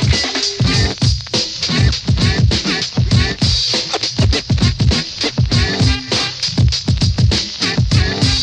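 Old-school hip-hop instrumental section: a DJ scratching a record on a turntable in quick back-and-forth strokes over a steady drum beat, with no rapping.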